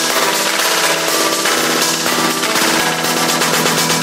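Electronic house music in a section without bass: held synth chords under a very fast, dense run of percussion hits.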